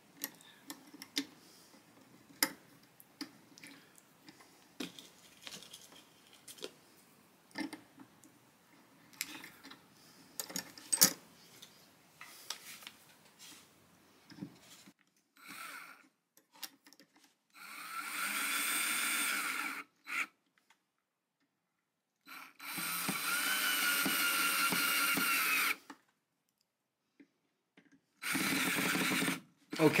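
Faint clicks and handling as small screws are started by hand in a metal plate on the guitar's end, then a cordless drill driving the screws in three short runs of steady motor whine in the second half.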